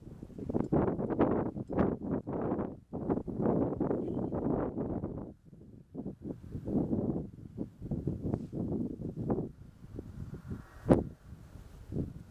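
Gusty wind buffeting the microphone, rising and falling in uneven surges, with a single sharp knock about a second before the end.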